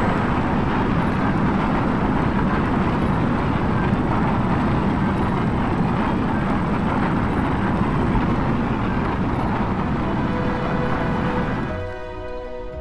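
Rocket-launch sound effect: a loud, steady rushing noise of thrust as the car climbs after lift-off. A few held music notes come in near the end.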